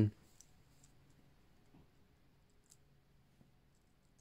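Near silence: faint room tone with a few scattered, faint clicks.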